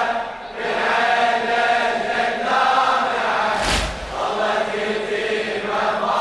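A Shia mourning chant (nawha), sung in long held lines that break briefly now and then, with a brief thump about three and a half seconds in.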